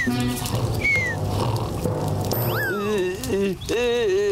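Cartoon snoring sound effect: a low rumbling snore with a short falling whistle about a second in, over background music. Near the end come falling sliding tones and a voice.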